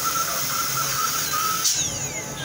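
High-speed air-turbine dental drill whining as its bur cuts into a decayed upper front tooth. The pitch dips briefly while it bears on the tooth, and near the end it winds down with a falling whine.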